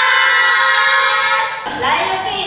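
A group of young women shouting a long, drawn-out cheer together, held steady and stopping shortly before the end.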